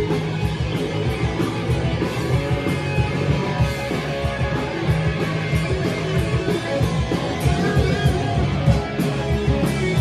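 Punk rock band playing live and loud: electric guitars, bass guitar and drum kit over a fast, steady drumbeat.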